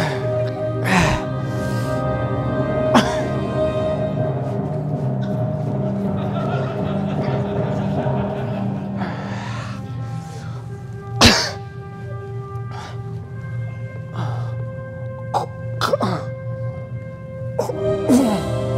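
A man coughing repeatedly over background music of long held chords. The coughs come at the start, about one and three seconds in, loudest about eleven seconds in, and several more near the end.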